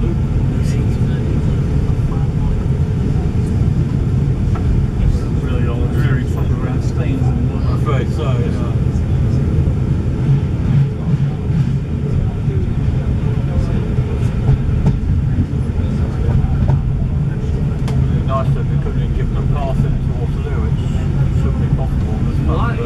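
Steady low running rumble of a moving railway passenger coach, wheels on the track, heard from inside the carriage, with faint passenger voices now and then.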